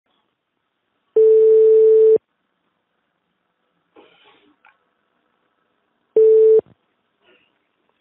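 Telephone ringback tone heard down the line by the caller: a steady low tone about a second long, then a second ring five seconds later that cuts off after about half a second as the call is answered.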